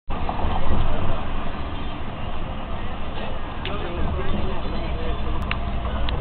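Road noise heard from inside a moving vehicle at highway speed: a steady low rumble of engine and tyres.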